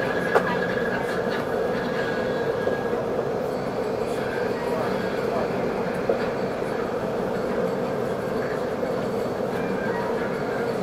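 Interior running noise of a CRH6A electric multiple unit in a tunnel: a steady rumble with a held hum, and one sharp click about half a second in.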